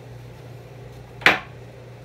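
A single sharp knock about a second in, over a steady low hum.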